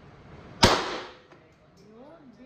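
A single pistol shot about two-thirds of a second in, its report ringing off the walls of an indoor shooting range and dying away within half a second.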